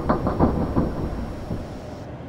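Deep mechanical rumbling with rapid, irregular clanks that thin out and fade over the two seconds. These are the animated sound effects of a giant drill-armed robot moving.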